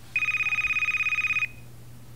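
A telephone ringing: one electronic trilling ring with a rapid, even warble, lasting about a second and a quarter.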